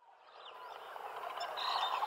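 Jungle ambience with birds chirping, fading in from silence and growing steadily louder.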